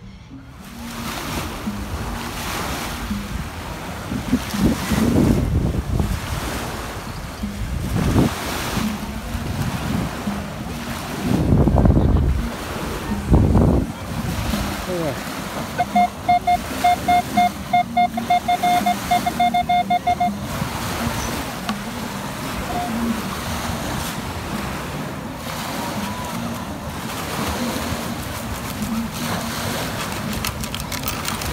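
Minelab Equinox metal detector giving a fast run of short, identical beeps for about four seconds past the middle, as its coil passes over a buried target reading a solid 20. Steady surf and wind noise runs throughout, with a couple of low rumbles before the beeps.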